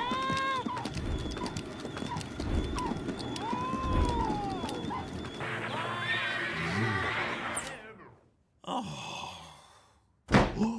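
Cartoon cat yowling in long, arching whinny-like cries over a rapid clatter of low thumps as it runs the wheel; the sound falls away about eight seconds in, leaving only a faint brief noise near the end.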